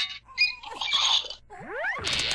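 Pitch-lowered sound effects from a Nick Jr/Noggin logo ident: a short noisy burst, then several quick animal-like calls, then rising glides near the end.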